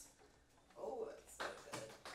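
Silence for under a second, then faint voices and a single sharp tap about one and a half seconds in.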